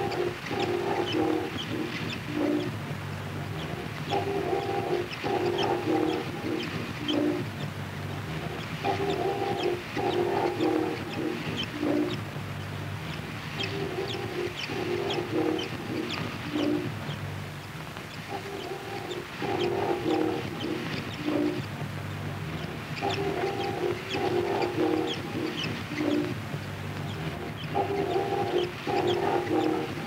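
Experimental noise music: a looped phrase of stuttering mid-pitched tones with high chirps, repeating about every four to five seconds over a steady low drone.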